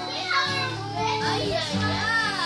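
Acoustic guitar playing chords, with a girl's voice over it.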